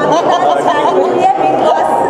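Chatter of several overlapping voices, with a short laugh about half a second in.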